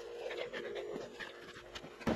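Faint rustling and small clicks of hair and clothing being handled as hair is put up, over a faint steady hum.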